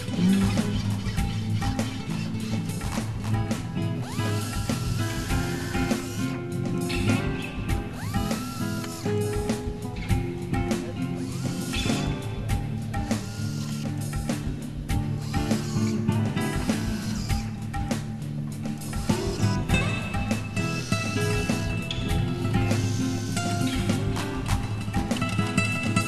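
Background music with a beat over the sound of a pneumatic drill boring the fitting holes in a carbon-fibre bicycle frame.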